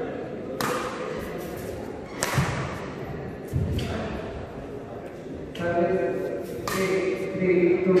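Badminton rally: rackets hitting the shuttlecock about five times, a second or so apart, each crack echoing in a large hall, with a couple of low thuds from play on the court. Voices of onlookers go on underneath and grow louder near the end.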